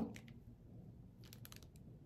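Faint light clicks from a plastic tattoo needle cartridge and machine grip being handled in gloved hands: one just after the start and a quick cluster in the second half.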